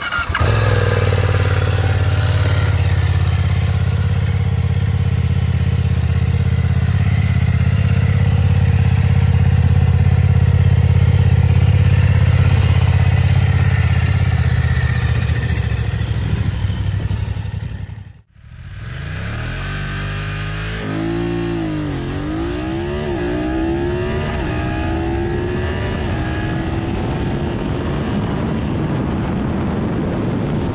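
BMW F900R's 895 cc parallel-twin engine idling steadily. About eighteen seconds in it cuts off suddenly, and a motorcycle is heard accelerating hard: its engine note rises and drops back several times as it shifts up quickly, then climbs steadily at high speed.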